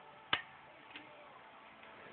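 A single sharp click of a small lamp switch as the light under the bunk bed is switched on, followed by a much fainter tick about a second later.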